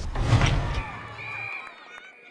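Open-air background noise fading out and cutting off, then faint gliding and steady high tones of a logo transition sound effect.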